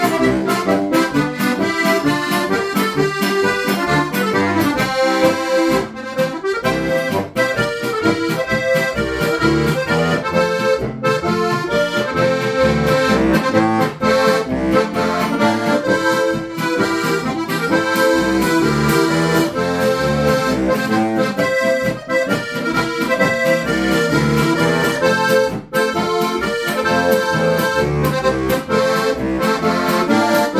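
Lanzinger diatonic button accordion (Steirische harmonika) played solo: a tune on the treble buttons over pulsing bass notes and chords from the bass buttons.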